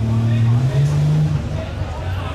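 A car engine running with a low steady note that steps up in pitch about two-thirds of a second in, as it revs or pulls away, then drops away about halfway through.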